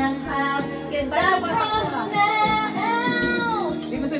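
A girl's voice singing a song over instrumental backing, with one long wavering held note in the second half.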